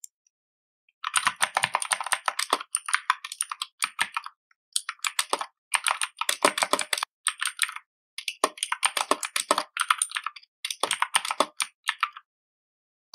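Computer keyboard being typed on fast, in several quick bursts of rapid key clicks with short pauses between.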